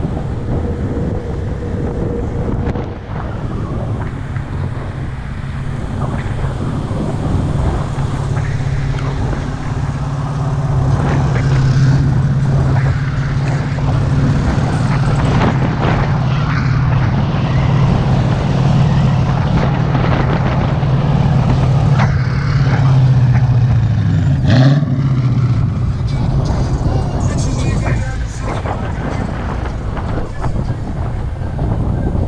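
Motorcycle engine running steadily at road speed, with rushing wind over it. The engine's hum dips sharply for a moment about 24 seconds in, as in a gear change.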